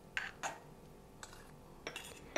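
Spoon scraping thick cooked oatmeal out of a saucepan into a ceramic bowl: two short, soft scrapes about a quarter-second apart near the start, a faint scrape in the middle and a light click near the end.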